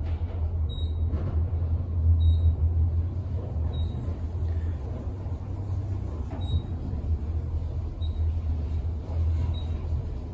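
KONE traction elevator cab travelling upward: a steady low rumble and hum of the ride, with short high beeps recurring every second and a half or so.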